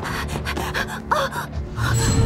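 A series of short, sharp gasps and hard breaths from a person out of breath, with a brief strained vocal sound about a second in, over background music.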